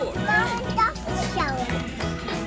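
Background music with a child's high voice speaking over it.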